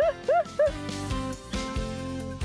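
A dog barking in quick short yaps, about four in the first half-second or so, over background music that then carries on alone.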